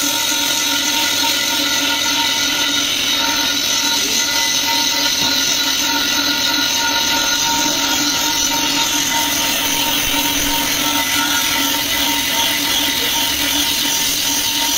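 Electric angle grinder running at speed with its disc pressed against a steel tank's surface, a steady whine over a continuous grinding hiss, grinding the metal down to clean bare steel.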